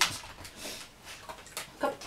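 A sharp click, then a few light taps: a miniature pinscher's claws on a hard painted floor as it comes down from a front-leg handstand onto all four feet.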